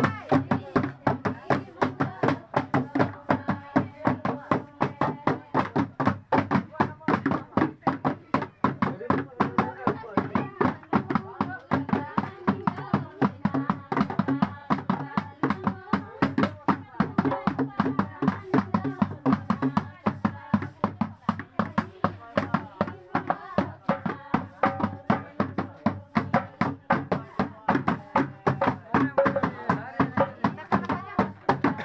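Metal pots and basins beaten by hand as drums in a fast, steady rhythm, with voices calling and singing over the beat.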